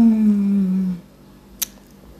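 A woman's closed-mouth "mmm" hum while eating, about a second long and falling slightly in pitch. It is followed by a single short, sharp mouth click.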